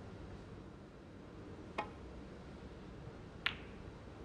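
Two sharp clicks of snooker balls striking each other, a little under two seconds in and again near the end, the second louder, over a low hush.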